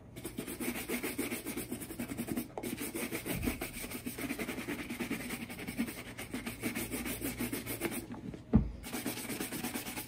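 Quick back-and-forth strokes of a wooden-handled bristle brush across the leather upper of a Red Wing Iron Ranger 8111 boot, several strokes a second. The brushing pauses briefly near the end and starts again after a single thump.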